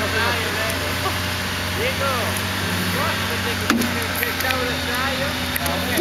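An off-road 4x4's engine running steadily at low revs, with voices calling out over it.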